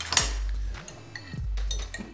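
Metal cutlery clinking against a glass jar and pizza pans: one sharp clink right at the start, then a few lighter clicks.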